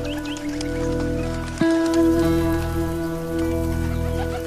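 Instrumental rock music: sustained, ringing chords, with a new chord struck sharply about a second and a half in.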